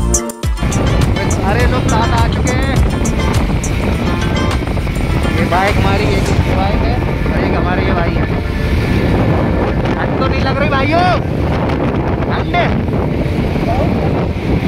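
A music track cuts off about half a second in. After that comes a steady rush of wind on the microphone, with motorcycle road and engine noise, from riding at speed on a highway. A few brief rising-and-falling tones come through it now and then.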